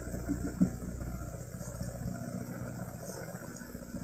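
Faint street ambience: a low, steady vehicle engine hum with a few faint distant voices about half a second in.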